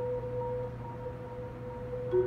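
Marimba played four-handed, sustaining one soft mid-range note that fades a little, with no new strikes.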